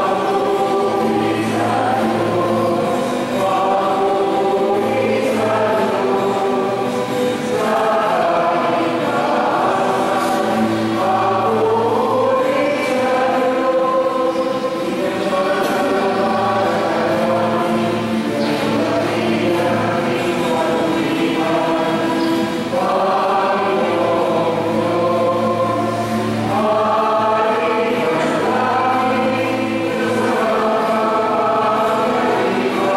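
Church choir singing a hymn in sustained, flowing phrases, with a low steady bass held beneath the voices.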